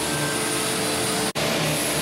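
Small screw press running steadily while rice hulls are fed through to flush out oily residue: a steady machine hum with a few held tones over a broad hiss. The sound cuts out for an instant just over a second in.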